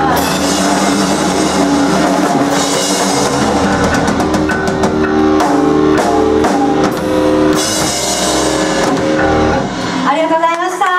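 Live rock band playing loud: a drum kit with repeated cymbal crashes, distorted electric guitars and bass holding chords, with the music dropping off right at the end.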